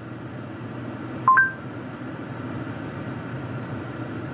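Android Auto voice assistant's short two-note chime, a lower note stepping up to a higher one, about a second in, sounding from the car's speakers after a spoken search request. A steady low cabin hum runs underneath.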